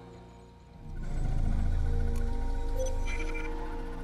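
Film score music: quiet sustained tones, then a low, dark rumbling swell about a second in that holds on.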